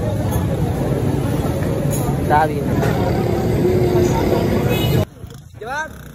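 Busy street hubbub: many voices talking over a steady low rumble of motor traffic. It cuts off suddenly about five seconds in to a much quieter spot, where a man begins speaking.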